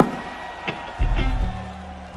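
Live band instruments on stage: a held high tone, then a few deep bass notes starting about halfway through and stepping up in pitch.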